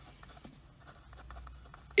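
A pen writing on paper: a run of faint, short scratching strokes as a line of symbols is written out.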